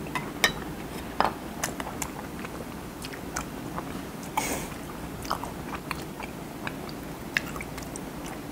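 Close-miked chewing of a mouthful of food, with many small wet clicks and crunches scattered irregularly through it and a soft breathy sound about four and a half seconds in.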